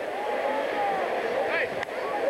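A football referee's voice announcing a penalty over the stadium public-address system, with crowd noise behind it.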